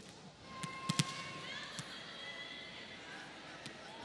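A volleyball bounced on the court floor by the server before her serve: a few sharp thumps, clustered about a second in, with single ones later. A faint arena background hangs beneath.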